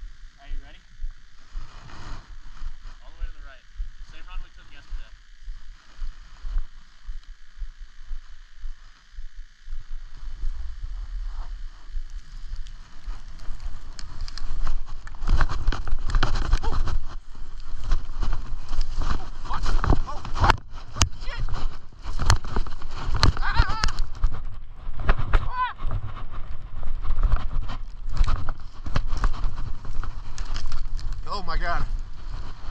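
Skis scraping and hissing over snow at speed, with a strong low rumble. It sets in about a third of the way in, after a quieter start, and stays rough and uneven.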